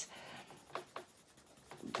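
A pencil shading on sketchbook paper, pressed fairly hard, in faint short strokes.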